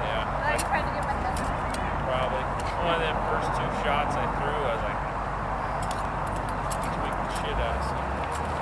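Indistinct voices over a steady rush of background noise, with scattered light clicks.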